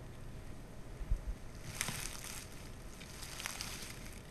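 Faint outdoor background noise with wind on the microphone, broken by a few soft clicks or knocks, the sharpest about two seconds in.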